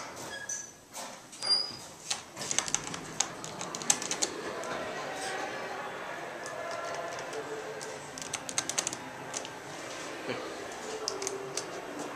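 Montgomery elevator car's door equipment clicking and rattling in quick runs of clicks: a long run a couple of seconds in and a shorter one about nine seconds in.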